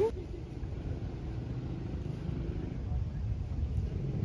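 Outdoor ambience: a low, uneven rumble with faint distant voices.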